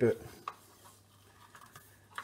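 Faint handling noise of electrical tape being pressed and smoothed onto a plastic coil spool: a light click about half a second in, then quiet rubbing.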